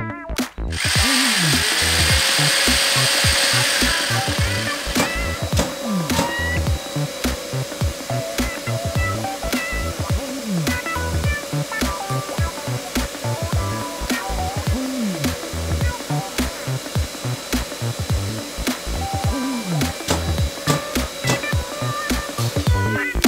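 Bosch GAS M 35 AFC wet/dry dust extractor's suction turbine starting up about a second in and running steadily, with a louder hiss for the first few seconds, under background music with a beat.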